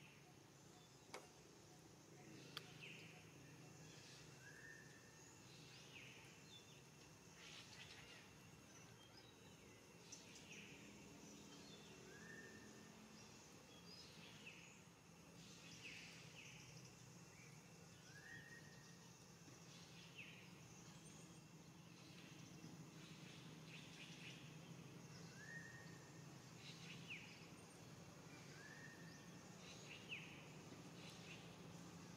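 Near silence outdoors: a faint steady low hum, with faint short chirps every two to three seconds.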